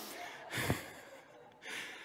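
A man laughing quietly to himself, heard as two breathy exhales into the microphone, about half a second in and again near the end.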